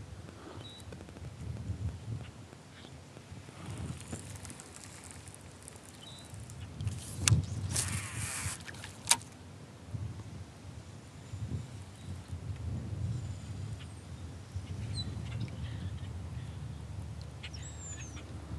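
Low rumble of wind on the microphone with a few faint bird chirps scattered through. A couple of sharp knocks come about seven and nine seconds in, with a brief hiss between them.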